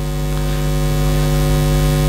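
Steady electrical mains hum and buzz from the sound system, growing slightly louder.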